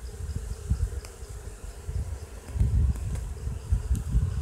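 Honeybees buzzing with a steady hum around a brood frame that is being lifted out of the hive while a colony is divided. A low rumble on the microphone runs underneath.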